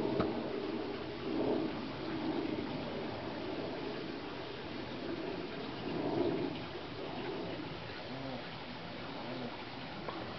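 A dove cooing, a few soft low hooting notes spaced irregularly, over a steady background hiss.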